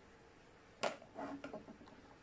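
Plastic screw cap being twisted on a water-filled jar: one sharp click a little under a second in, then a few softer clicks and scrapes as the cap turns on its threads.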